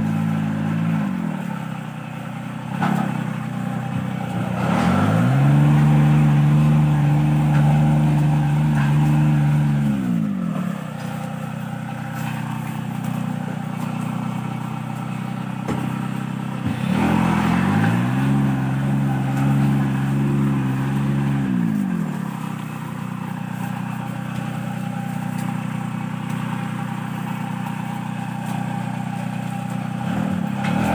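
Small engine of a motorised palm-fruit carrier (mini tractor with a tipping hopper) running steadily. It revs up twice, holding the higher pitch about five seconds each time, once around five seconds in and again around seventeen seconds in, and drops back to idle after each.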